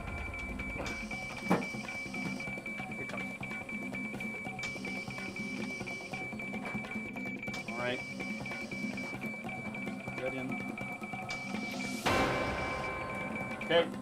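Background soundtrack music under a steady high-pitched tone, which stops about twelve seconds in as a rushing swell takes over; a brief voice sounds near the middle.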